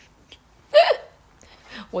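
A woman's single short hiccup, a brief voiced burst a little under a second in, between stretches of quiet; she starts speaking again at the very end.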